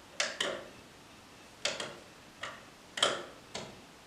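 Clicks of a small plastic IKEA Shortcut button being pressed repeatedly, about seven clicks, several in quick pairs, the loudest about three seconds in. The paired lamp stays lit throughout: the button switches the light on but not off.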